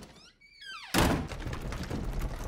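Horror-film sound design: a short pitched glide falling in pitch, then a sudden loud hit about a second in, followed by a heavy low rumble.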